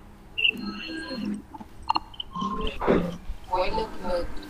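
Voices talking in short bits over a video call, with a sharp click about two seconds in.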